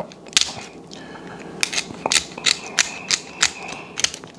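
Shears snipping through a king crab leg's shell: a series of sharp, crunching snaps, one about half a second in, then a quick run of about eight.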